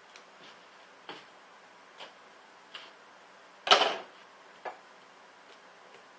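Scissors snipping window screen in short, sharp clicks about once a second. A little past halfway comes one louder, longer rustling clatter as the screen and parts are handled, followed by a single lighter click.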